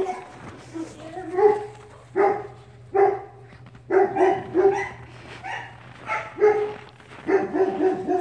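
A dog barking repeatedly in play: about a dozen short barks, some single and some in quick runs of two or three.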